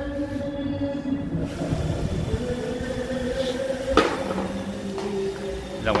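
Neighbour's karaoke singing and backing music, long held notes changing pitch every second or two, over the low running of an iRobot Roomba E5 robot vacuum; a single sharp knock about four seconds in.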